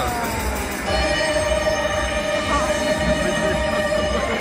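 A steady, high electronic tone from the light show's sound system, starting about a second in and held for about three seconds over a low background rumble.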